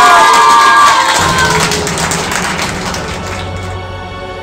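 A group of schoolgirls cheering and shouting, loud at first and fading away, while background music comes in about a second in and takes over.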